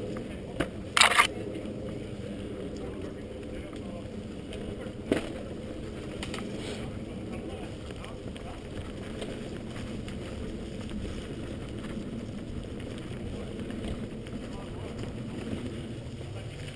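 A mountain bike rolling fast over a leaf-covered forest trail, heard from the bike itself: a steady rumble of tyres and rattling frame. Sharp knocks come about a second in (two close together) and again about five seconds in.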